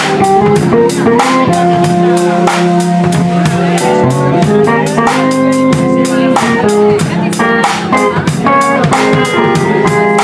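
Live rock-blues band playing: guitar and keyboard lines over a drum kit keeping a steady beat.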